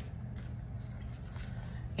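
Low steady background hum with faint room noise and no distinct event.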